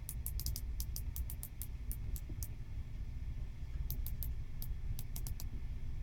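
Rotating bezel of a Breitling Ref 80180 quartz dive watch turned by hand, ratcheting in runs of quick, crisp clicks, about six a second, with a pause of a second or so in the middle before another shorter run.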